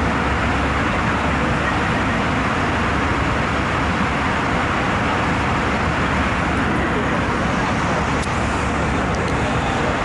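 Airliner cabin noise heard from a passenger seat: a steady, even roar of engines and rushing air with no change in level.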